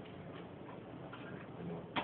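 Faint murmur of people in a room, with one sharp click near the end.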